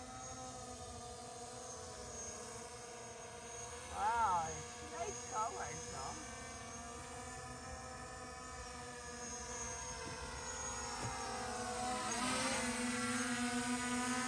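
Quadcopter drone in flight, its propellers giving a steady, many-toned whine that grows louder about twelve seconds in. A brief voice sounds about four seconds in.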